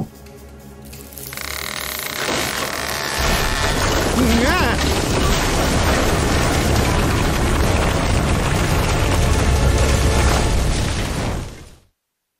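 Cartoon sound effects of an unstable underground tunnel caving in: a deep rumble of collapsing rock that builds over the first few seconds and runs on steadily, with dramatic music and a short shout about four seconds in. It fades out to silence at the end.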